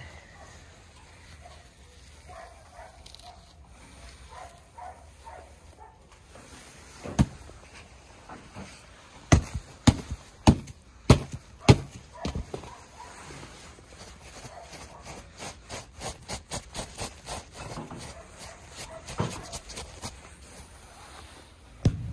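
Hand hammer striking the underside of old artificial turf. A single blow, then a run of sharp blows about half a second apart, then many lighter, quicker knocks.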